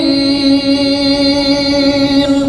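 A man reciting the Quran in melodic tilawah style, holding one long, steady note on a drawn-out vowel as he closes the recitation.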